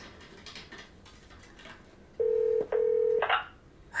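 Telephone ringing tone on the line: two short, steady beeps in quick succession, a double-ring cadence, about two seconds in.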